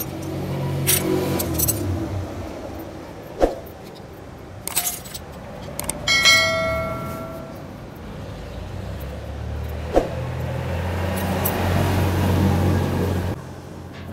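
Motorcycle clutch parts being taken out by hand: sharp metal clicks and clinks as springs and plates come off, and a loose metal part that rings like a small bell for about a second midway. A vehicle's steady low hum runs underneath, louder near the end before it cuts off.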